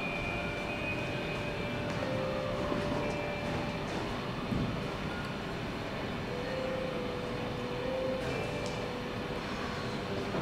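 A steady, even rumbling ambience, with faint held tones that come and go over it.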